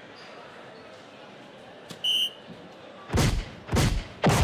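Electronic soft-tip dartboard scoring a dart with a short high beep about two seconds in. Near the end come two loud noisy rushes of electronic sound effect as the machine plays its award for the turn.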